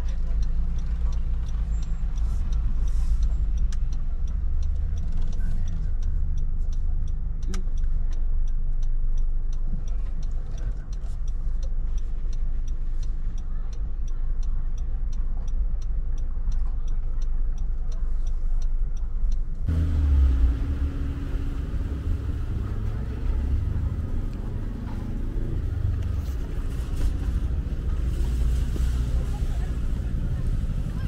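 Steady low rumble of a car's engine and tyres heard from inside the cabin as it creeps through a car park. About two-thirds of the way in, the sound cuts abruptly to open-air car-park ambience with uneven low rumbling.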